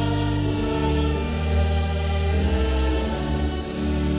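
Congregation singing a hymn in slow, long-held notes with organ accompaniment; the sound dips briefly near the end as one sung line closes and the next begins.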